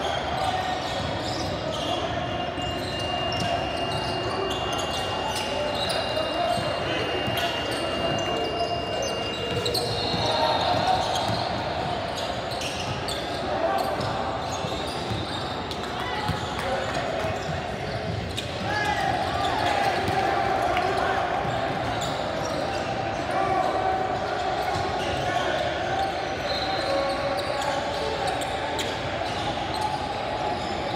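Game sounds of a basketball being dribbled on a hardwood gym floor, with many short knocks of the ball and feet, under indistinct shouting and chatter from players and spectators, echoing in a large gym.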